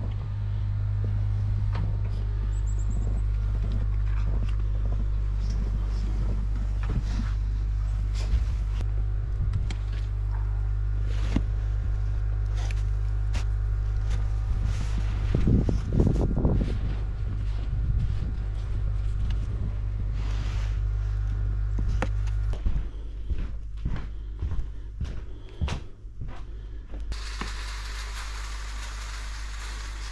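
Wind rumbling on the microphone, with crunching snow and knocks as a metal stockpot is filled with snow by shovel; the rumble stops a few seconds before the end. After that comes a steady hiss beside the pots of snow on the wood stove.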